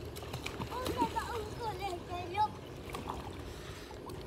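Young children's voices calling out in high, sliding cries that are not words, with light water splashing as they move through shallow muddy water.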